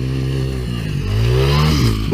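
Small dirt bike engine accelerating toward a jump: a steady note, then revving up with rising pitch about a second in, and falling away just before the end.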